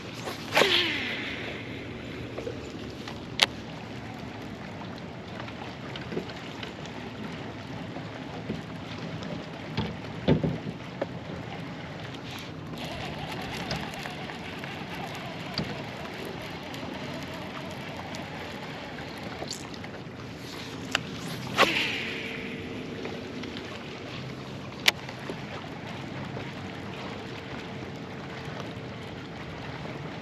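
Two casts with a baitcasting rod and reel, about twenty seconds apart: each a sharp whoosh, then the spool's whir falling in pitch as the line pays out. A single sharp click follows each cast a few seconds later, over steady wind and water noise.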